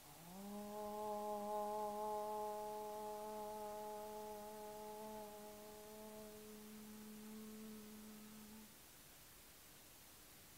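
A woman chanting a single long "Om". Her voice slides up briefly into a steady pitch, holds it for about eight and a half seconds while slowly softening, then stops.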